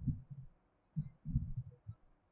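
A few soft, low thuds in a pause between speech.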